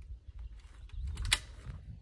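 Shotgun handling at a wooden gun rack: a few light knocks and one sharp click a little past the middle.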